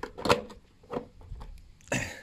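A few short plastic clicks and knocks, the loudest about a third of a second in, as a hand works the red flip-up cover of a toggle switch mounted on a scooter's plastic panel.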